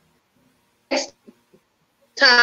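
A woman's single short burst of laughter about a second in, followed by a couple of faint breaths.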